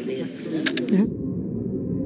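Indistinct murmur of several people talking at once, with a couple of sharp clicks in the first second. About a second in, the sound abruptly turns dull and muffled as all the high end drops out.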